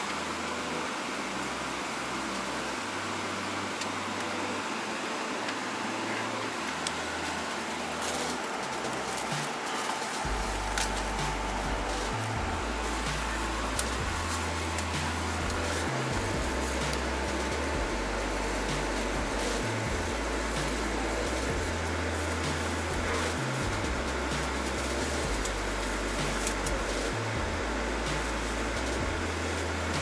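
Steady hiss of an airliner cabin's air conditioning at the gate, with music playing over the cabin speakers; a low bass line comes in about a third of the way through.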